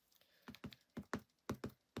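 Ink pad tapped repeatedly onto a rubber stamp mounted on an acrylic block to ink it: a quick run of light taps, about four a second.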